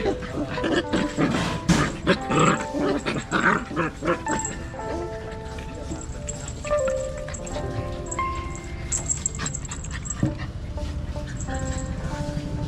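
Two puppies play-fighting, with a rapid run of short yips and barks through the first four seconds or so. After that, background music with held notes takes over.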